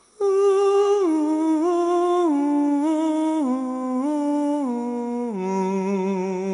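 A single voice humming a slow unaccompanied melody. It holds a first note, then steps downward note by note, and settles near the end on a low held note with vibrato.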